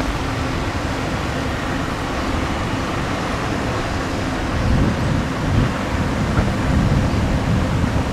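Strong wind buffeting the microphone: a steady rumbling noise, heaviest in the low end, that swells in gusts about five seconds in.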